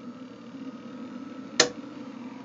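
Inverter under heavy load humming steadily with its cooling fan running, and one sharp click about one and a half seconds in as the solar disconnect is switched back on.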